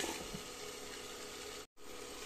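Green beans sizzling faintly in a kadai under a steel lid, the frying muffled by the cover. The sound cuts out for a moment near the end.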